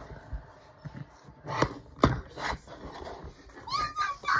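A few separate sharp knocks and bumps of handling on a floor, spread over the seconds. Just before the end comes a short, rising, squeaky call.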